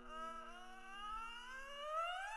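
A comic sound effect: a whistle-like tone that glides slowly and steadily upward in pitch. It plays over a held chord of background music that fades out near the end.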